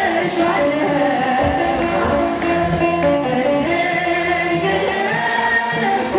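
A woman singing an Ethiopian Orthodox hymn (mezmur) into a handheld microphone, her voice amplified, with other voices singing along behind her.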